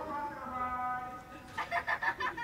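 A child's voice calling out: one long drawn-out shout, then a quick run of short clipped calls near the end.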